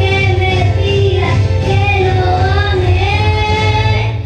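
A young girl singing a Spanish-language ballad into a microphone over a recorded backing track with a steady bass line.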